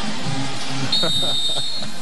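Stadium crowd noise with band music playing low held notes. A single steady high whistle sounds about halfway through and lasts about a second.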